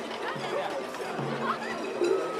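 A crowd of people talking all at once, many voices chattering together, with music faintly underneath.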